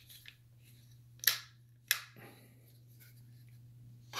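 Two sharp clicks about half a second apart, with a few lighter ticks before them, from an AK-pattern rifle (a Century Arms RAS47) being handled with its top cover off.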